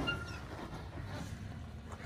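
Toyota Tacoma pickup's engine heard as a low, steady rumble as the truck crawls slowly over rock.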